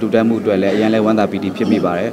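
A man speaking Burmese in an interview: only speech.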